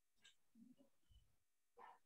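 Near silence: faint room tone over a video call, with a few soft, brief sounds.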